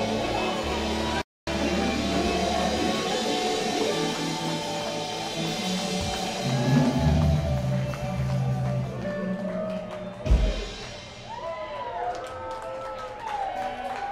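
Live jam band playing through a full mix of electric guitars, bass, drums and keyboards, with a brief complete dropout in the audio about a second in. Around ten seconds in there is a low thump, and the music thins out to a few wavering, bending notes.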